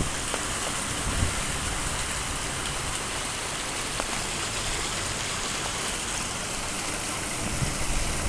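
Steady rush of water falling from a backyard koi-pond waterfall into the pond, with a few soft low bumps near the end.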